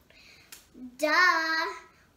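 A young girl's voice exclaiming a drawn-out, sing-song "Duh!" about a second in, held for under a second.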